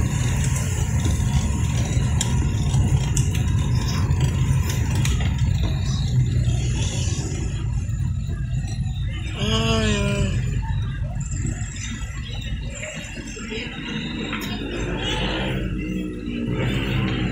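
Low, steady rumble of a car driving, heard from inside the cabin, easing off after about twelve seconds. About ten seconds in there is a brief pitched sound that wavers in pitch.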